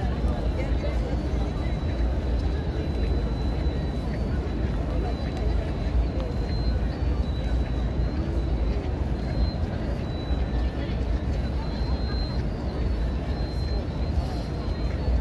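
Distant chatter of a crowd of people walking in a large open plaza, over a steady low rumble.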